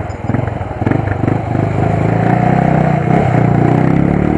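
Motorcycle engine running while under way, a continuous low engine note that settles into a steady hum about two seconds in.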